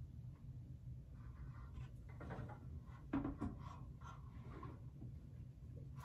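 Faint scraping and a few light knocks of small terracotta pots being stacked into a wire basket and set on a shelf, clearest about two and three seconds in.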